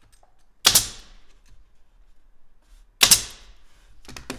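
Pneumatic brad nailer firing twice, about two seconds apart, each a sharp clack as it drives a nail into the glued plywood drawer box.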